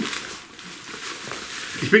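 Plastic bubble wrap rustling as it is handled and unrolled by hand, a soft steady rustle that runs until a voice comes in near the end.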